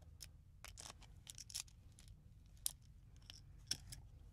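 Faint clicks and light scrapes of fingers handling an opened plastic three-pin mains plug and pulling its wires free of the terminals, with a couple of sharper clicks late on.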